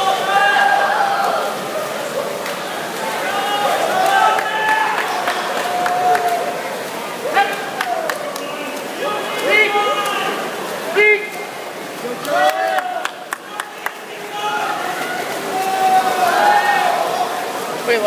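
Spectators yelling and cheering on swimmers during a freestyle relay race, with voices rising and falling over a steady crowd din.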